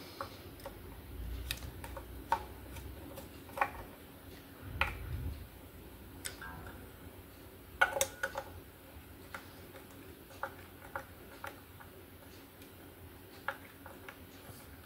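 Scattered small clicks and taps, about a dozen at irregular intervals, from a screwdriver working the pickup height screws and fingers pressing the strings down onto the frets of an electric guitar, with soft low handling rumble about a second in and again about five seconds in.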